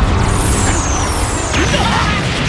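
Anime explosion sound effect: a loud, continuous rumble and hiss as a blast tears into rock, with a couple of high whistling tones falling in pitch.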